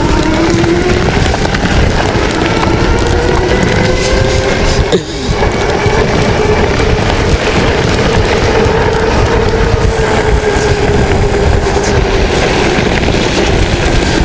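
Engwe Engine Pro e-bike's electric motor whining at full throttle, its pitch rising as the bike gathers speed and then holding steady, over heavy wind rushing across the microphone.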